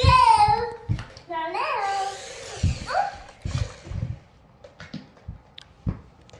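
Young children's excited wordless shouts and squeals during play. Low thumps follow, from bare feet on a hardwood floor. About two-thirds of the way through it goes quieter, with a few small clicks.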